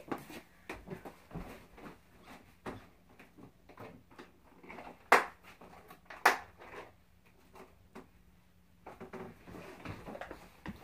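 Someone moving about a small room and handling objects at a shelf: scattered soft clicks and knocks, with two sharper knocks about five and six seconds in.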